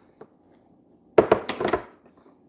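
Dishes being handled: a faint tap, then a quick run of clinks and knocks from a spoon and bowl, just over a second in.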